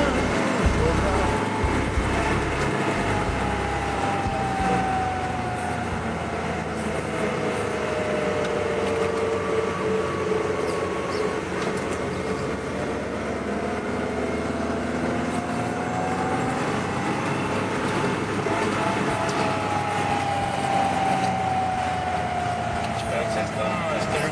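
Lada Niva (VAZ-2121) heard from inside the cabin while driving, engine and drivetrain running under a low rumble, with a whine that slowly falls, rises and falls again as the speed changes.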